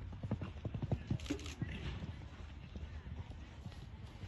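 Hoofbeats of a horse cantering on a sand arena: a run of quick, evenly spaced strikes, clearest in the first second and a half and then fainter as the horse moves away.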